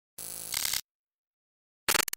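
Digital glitch sound effect for an animated title card: a buzzy burst of static lasting about two-thirds of a second, then a couple of short stuttering bursts near the end, with dead silence between.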